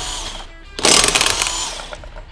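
Cordless impact wrench with a 17 mm socket hammering wheel bolts loose. The end of one burst fades at the start, and a second burst of about a second begins a little under a second in.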